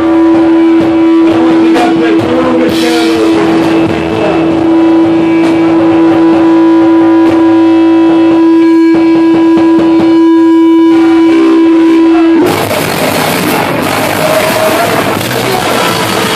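Punk rock band playing live with distorted electric guitar, bass and drum kit. A single steady note hangs over the playing for about twelve seconds, then stops suddenly as a denser, louder band sound takes over.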